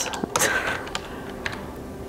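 Computer keyboard typing: a few scattered, unevenly spaced keystrokes as a mistyped word is deleted and retyped.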